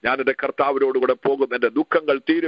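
Speech only: a man preaching without pause in a non-English language, his voice thin and band-limited as if coming through a telephone conference line.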